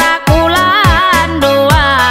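A woman singing a Dayak karungut song, her melody wavering in ornamented turns, over a pop backing with steady bass and a regular deep kick drum.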